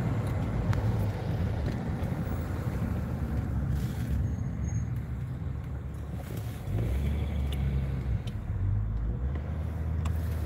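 Cabin noise inside a Mercedes-Benz car being driven: a steady low rumble of engine and tyres on the road. It eases a little in the middle and picks up again a few seconds later.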